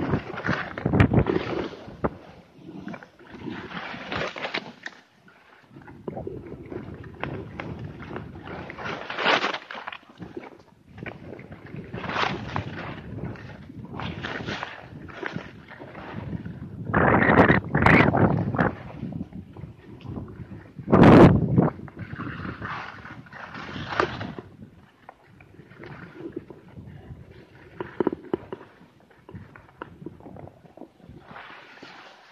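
Skis sliding and scraping over snow through a run of turns, an uneven series of swishes, with the loudest scrapes about two-thirds of the way through.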